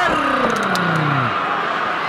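A single man's long drawn-out shout, held and then sliding down in pitch over about a second, over the steady noise of an arena crowd.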